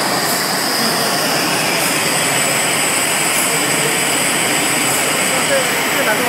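Bottle air-cleaning machine running: a steady, loud rush of blown air with thin high whines held above it.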